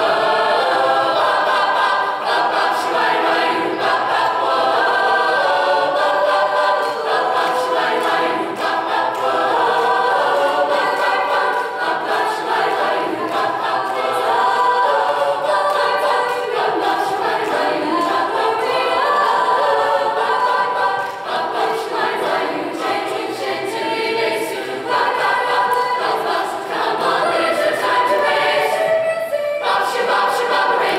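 Mixed choir of male and female voices singing together in a gymnasium, following a conductor.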